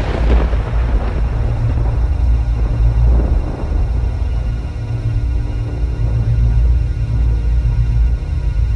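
Dark, ominous background music built on a deep pulsing low drone, with a noisy swell fading away in the first second and a smaller one about three seconds in.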